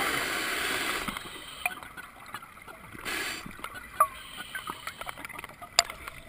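Scuba diver's open-circuit breathing heard underwater through a head-mounted camera housing: bubbles from an exhalation fade over the first second. A brief hiss comes about three seconds in, with scattered small clicks between.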